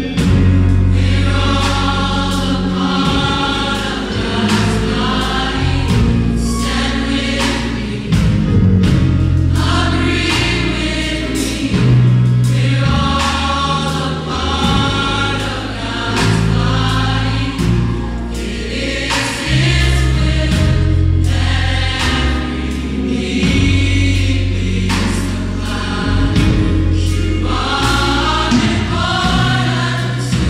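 A gospel choir singing in full voice, many voices together. Under the voices runs a deep accompaniment of sustained bass notes that change every second or two.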